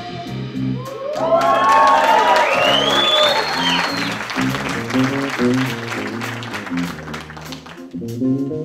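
Audience applause with whoops at the end of a jazz saxophone solo, over the band's electric bass, piano and drums playing on. The clapping is loudest in the first half and thins out near the end while the bass line carries on.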